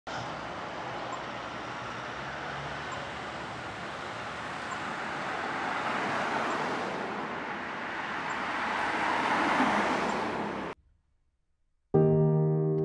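Street traffic: the steady noise of cars on the road, swelling as vehicles pass about halfway through and again near the end, then cutting off suddenly.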